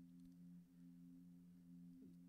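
Near silence in a pause, apart from a faint steady low hum made of two held tones.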